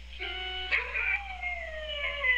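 Electronic keyboard notes struck by a dog's nose ring out as sustained electronic tones. About a second in, a dog begins a long howl that slowly falls in pitch.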